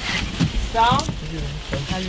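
Brief voices of film crew and actors: a short, high falling call just under a second in, then low talk, with a sharp click about a second in.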